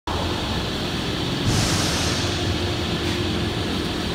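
Steady mechanical drone of a large steel fabrication shop, with a short hiss about one and a half seconds in.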